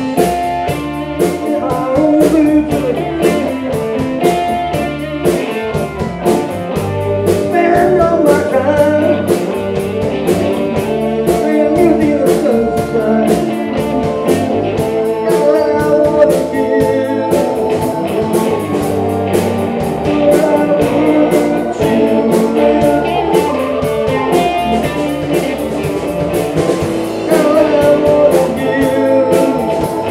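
Live blues band playing with a steady beat: two electric guitars over bass guitar and drum kit.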